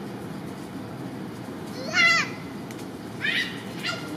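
Long-tailed macaque calling: one loud, pitched call that rises and falls about two seconds in, then two shorter calls near the end.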